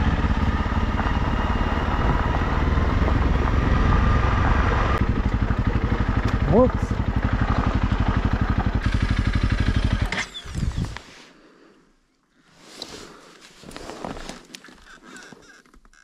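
Honda CRF300 Rally's single-cylinder engine running at low revs on a descent, with one brief rev partway through. About two-thirds of the way through the engine stops and the sound drops away, leaving only faint scattered rustling.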